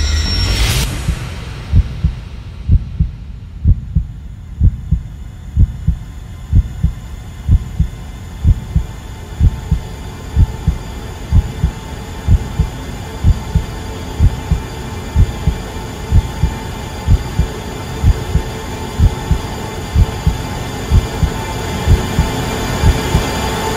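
Film-soundtrack heartbeat: a slow low double thump, lub-dub, about once a second, over a steady dark hum. A loud swell cuts off in the first second, and a faint held tone builds up near the end.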